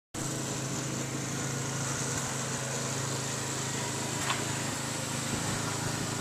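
Small engine running at a steady speed under a steady hiss, with one short click a little after the middle.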